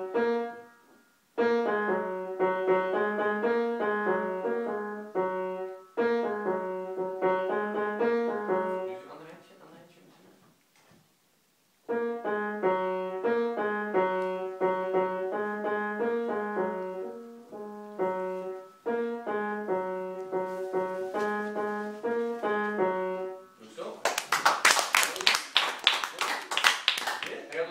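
A young child playing a short, simple piece on a grand piano in phrases of evenly paced mid-range notes, with a pause of about two seconds near the middle. Applause breaks out about two seconds before the end as the piece finishes.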